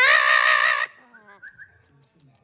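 Double yellow-headed Amazon parrot giving one loud, wavering call that stops sharply after under a second, followed by a few quieter short notes gliding upward.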